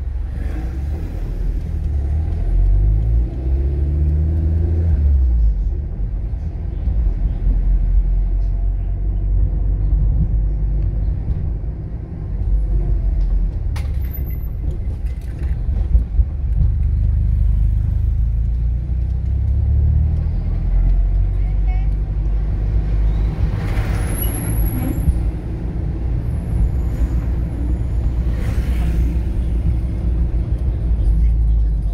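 Car engine and tyre rumble heard from inside a car driving along a city street, with the engine note rising as it pulls away about two to five seconds in.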